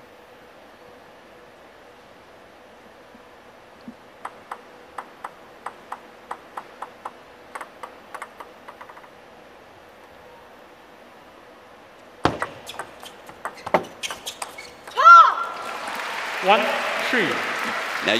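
A celluloid-plastic table tennis ball bounced on the table a dozen or so times in a steady run of ticks before a serve, then a short rally of sharp ball strikes on bat and table. The rally ends with a loud shout from a player and crowd applause and cheering.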